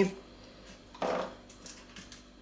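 A spoon scraping in a baking tin as cake batter is spread, one short scrape about a second in, followed by a few light clicks.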